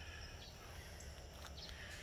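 Faint background with no speech: a steady low rumble, with thin, steady high insect tones above it.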